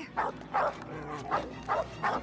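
Dog barking: four short barks in two pairs, each pair a little under half a second apart.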